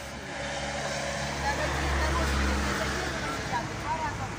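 A motor vehicle passing close by, its low engine hum building to a peak about two seconds in and then fading away.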